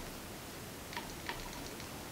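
Faint taps of a dense powder brush stippling powder foundation onto the face: a handful of light, irregular ticks about a second in, over quiet room hiss.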